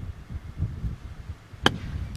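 A golf club strikes the ball once near the end, a single sharp click on a short pitch shot. A low wind rumble on the microphone runs underneath.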